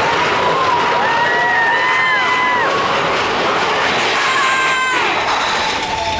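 Several log flume riders screaming and whooping together in long, held cries over a steady rushing noise.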